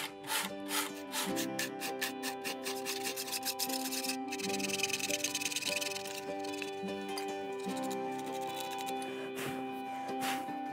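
Background music with held notes, over short, repeated strokes of a hand tool scraping wood, densest in the first few seconds.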